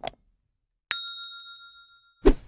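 Subscribe-button animation sound effect: a quick double mouse click, then about a second in a bright notification ding that rings on and slowly fades.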